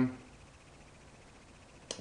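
Near silence: faint steady hiss of room tone after the tail of a spoken "um", with a single short click just before speech resumes near the end.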